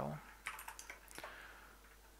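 Computer keyboard keystrokes: a quick run of about six taps as a command is typed, stopping a little over a second in.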